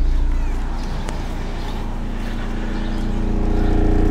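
Rockford Fosgate subwoofer in a ported enclosure playing a steady 29 Hz sine test tone from a phone tone-generator app: a deep, steady hum with overtones. At this frequency, near the box's port tuning, the cone barely moves and most of the sound comes out of the port.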